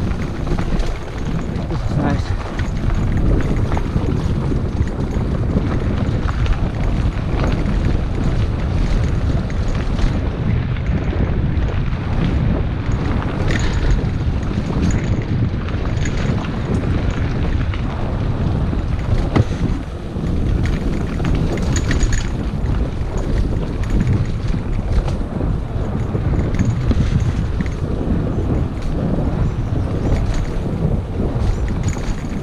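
Wind buffeting a mountain biker's camera microphone on a descent of a dirt singletrack, a constant deep rumble, with scattered knocks and rattles from the bike going over the trail.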